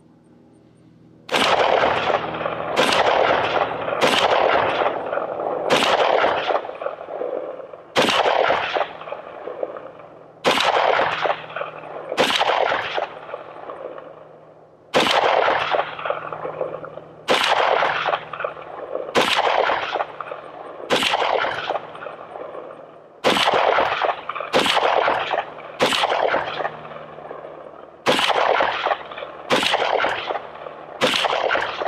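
AR-15 rifle firing a string of aimed semi-automatic shots, about twenty of them, starting about a second and a half in and coming roughly one to two seconds apart, each shot trailing off in an echo.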